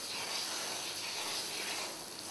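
Lawn sprinkler spray hissing steadily, with the water splashing against a dog as she snaps at the jet.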